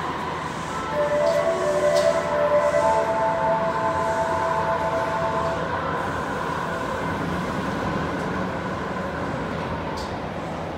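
Osaka Metro 80 series linear-motor subway train at a platform. Several steady tones of different pitch sound from about a second in until about six seconds in, over a constant hum.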